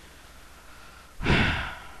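A woman sighs once, a single breath out of well under a second, starting just over a second in, close to a headset microphone.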